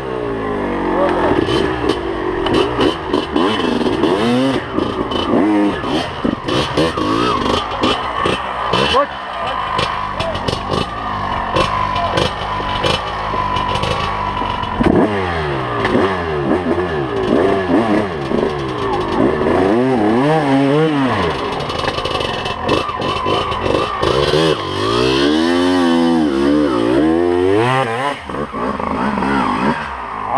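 Dirt bike engine revving up and down over and over as it is ridden slowly over steep, rough forest ground, with frequent short knocks and clatter from the bike.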